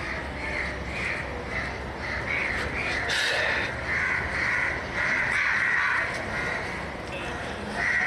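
Birds calling in a run of short calls, about two a second.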